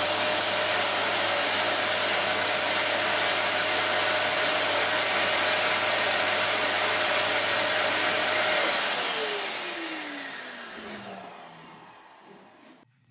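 Vacuum cleaner running steadily, sucking through a core-drill dust shroud sealed against a wall. About nine seconds in the motor is switched off and winds down, its whine falling in pitch as it fades away.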